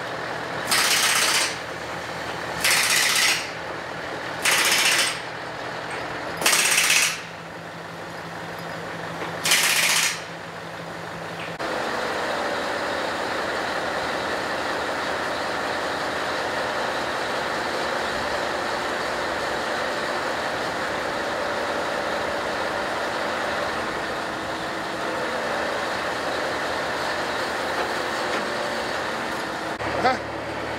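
Crane truck's diesel engine idling, broken by five short, loud hisses of compressed air spaced one to three seconds apart. About twelve seconds in, this changes abruptly to a steadier, louder running noise from the truck while the crane lifts loads.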